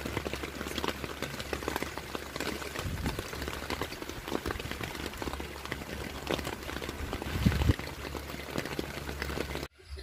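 Rain pattering on a camping tent's fabric, a dense run of small taps over a low steady hum, cutting off suddenly near the end.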